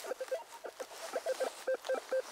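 RUTUS metal detector giving a run of short, uneven beeps at one pitch, about five a second, as its search coil sweeps over the spot: the target response of a shallow buried object, which turns out to be a coin.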